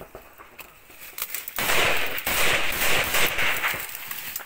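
Small-arms gunfire: a few scattered sharp shots, then from about one and a half seconds in a dense, loud stretch of rapid fire.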